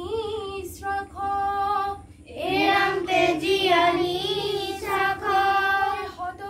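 A group of children singing a devotional chant to Krishna together, breaking off for a moment about two seconds in and coming back louder.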